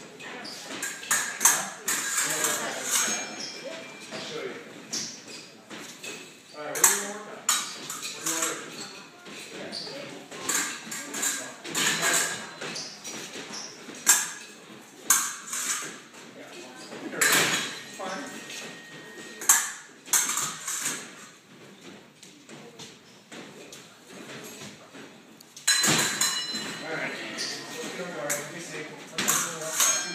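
Steel épée blades clicking and ringing against each other in many separate sharp contacts as parries and attacks are drilled, with a louder run of contacts near the end.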